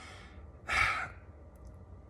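A man's short, breathy sigh, one exhale just under a second in.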